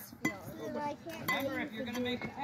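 A metal youth baseball bat strikes the ball with a single sharp clink about a quarter second in, sending a ground ball into the infield. Children and spectators talk around it.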